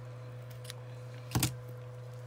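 Small yellow-handled craft scissors snipping through a few strands of thin ribbon: a single sharp snip about one and a half seconds in, over a steady low hum.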